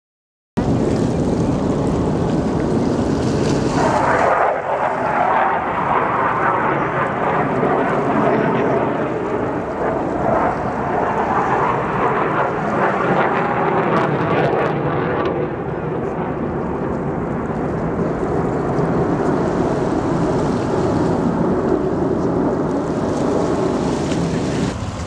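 Jet noise from Blue Angels F/A-18 Hornet fighters flying past: a loud, continuous rushing rumble with no clear pitch. It starts abruptly about half a second in, is strongest over the next fifteen seconds or so, then eases a little.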